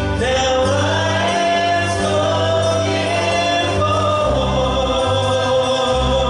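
Worship song with a group of voices singing long held notes over a steady instrumental accompaniment.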